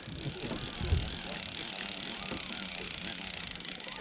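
Conventional line-counter multiplier reel being cranked to wind in fishing line, giving a steady, finely ticking whirr. There is a low bump about a second in.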